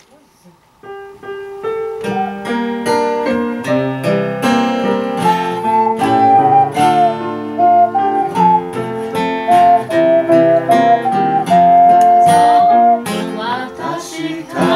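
Ocarina playing a slow melody of held, pure notes over plucked-string accompaniment. The plucked accompaniment starts about a second in, the ocarina comes in about five seconds in and stops shortly before the end.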